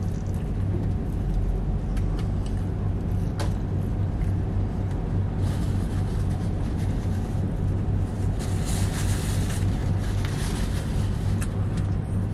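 Steady low hum of a vehicle idling, heard inside the car's cabin, with a man chewing a mouthful of burger and occasional small clicks and rustles.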